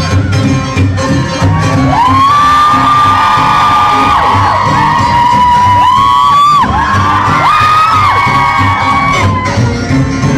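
Stage music with a steady beat under an audience cheering and whooping. Long high cheers rise and hold from about two seconds in until near the end.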